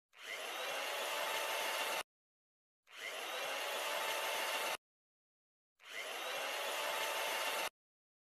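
Chainsaw sound effect: three runs of steady whirring with a faint whine, each about two seconds long, starting with a quick rise and cutting off sharply, with dead silence between them.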